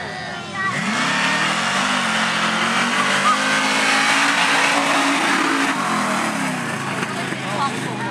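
Pickup truck engine revved hard at full throttle as the truck races across a dirt track. The engine note climbs about half a second in, holds high and loud, then drops away near the end.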